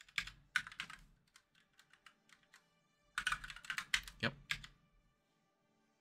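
Typing on a split computer keyboard: scattered keystrokes over the first two and a half seconds, then a fast, dense run of keystrokes from about three to four and a half seconds in.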